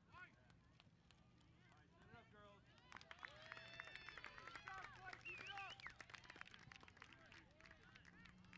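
Faint, distant shouting and cheering from several voices of players and spectators as a goal is scored in a soccer match. It swells about three seconds in and dies down after about six seconds.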